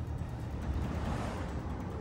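Steady low rumble of a car's engine and road noise heard from inside the cabin, with a faint swell of noise about a second in.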